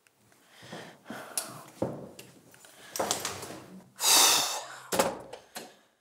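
Front door of an apartment being pushed shut, ending in sharp latch clicks about five seconds in, amid rustling clothes and footsteps. There is a heavy breath about four seconds in, the loudest sound.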